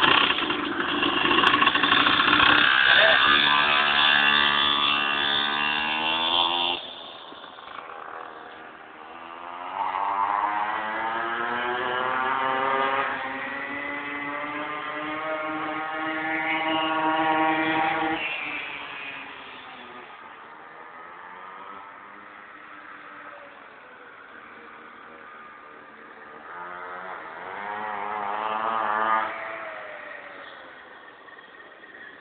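Mini-moto's small engine revving as it is ridden, its pitch rising and falling with the throttle. It is loud for the first seven seconds, then fainter, swelling again twice: from about ten seconds in, and once more near the end.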